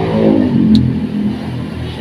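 A motor vehicle engine running close by, loud, swelling to its peak about halfway through and then easing slightly.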